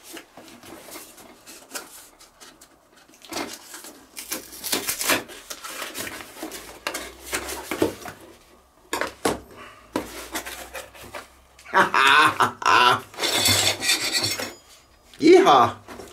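Cardboard parcel being torn open and rummaged through: irregular rustling and scraping of cardboard and paper, with light metallic clinks from the stainless-steel grill skewers inside. A man's voice comes in briefly near the end.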